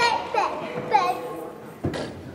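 High-pitched girls' voices calling and squealing in a gymnasium, three short calls in the first second, then fading. Near the end a single sharp thump.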